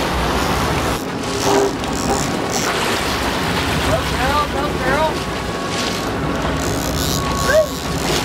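Boat engine running with water washing along the hull, and short excited shouts that rise in pitch about four to five seconds in and again near the end.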